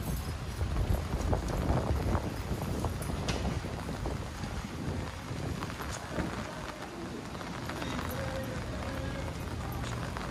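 Footsteps of someone walking on pavement, with gusty wind rumbling on the microphone, strongest in the first couple of seconds.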